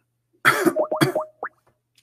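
A man coughing several times in a short fit, starting about half a second in and dying away by a second and a half.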